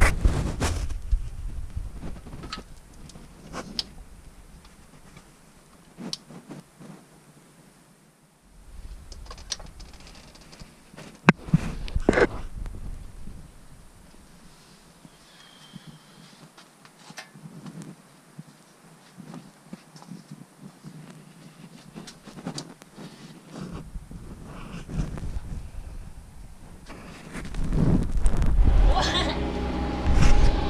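Handling noise from a hand-held camera: scattered small clicks and knocks, with one sharp knock about eleven seconds in. Stretches of low rumble, likely wind on the microphone, come and go and are heaviest near the end.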